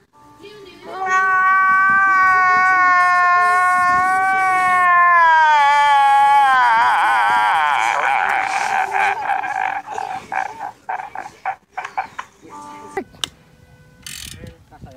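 A man's long, high-pitched crying wail, held for about five seconds and slowly falling, then wavering and breaking into sobbing laughter and broken sobs.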